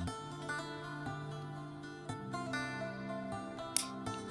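Soft background music with plucked-string notes, and a single sharp click near the end.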